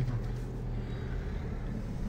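Ford Ka+ 1.2 petrol engine running at low revs as the car moves off slowly, heard from inside the cabin as a steady low hum.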